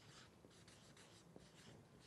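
Felt-tip marker writing a word on chart paper: a run of faint, short scratchy strokes.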